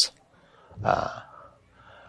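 A short, soft intake of breath between sentences of speech.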